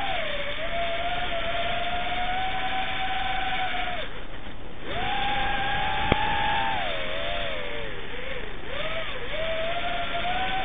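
FPV quadcopter's brushless motors and propellers whining, heard through the onboard camera. The pitch follows the throttle: it holds steady, cuts out for about a second, comes back rising, then wavers and falls near the end. A single sharp click comes a little after the middle.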